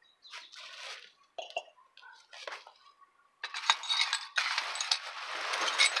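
Plastic trash bags rustling as they are dragged around in a dumpster, loud from about three and a half seconds in, with sharp clinks from something broken inside a bag.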